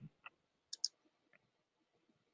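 Two quick, faint computer mouse clicks about three-quarters of a second in, followed by a fainter tick, as a slideshow is advanced.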